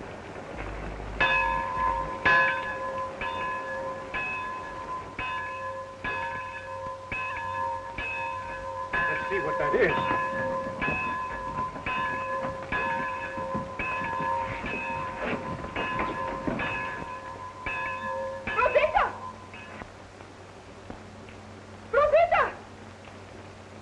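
A large hanging metal bell rung over and over, about one stroke every 0.8 seconds, each stroke ringing on into the next. It stops near the end.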